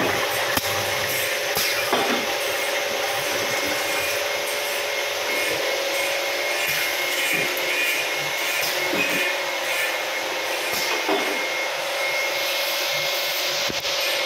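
Automatic soda bottle filling machinery running: a steady mechanical hum with a constant whine above it, and a few light clicks.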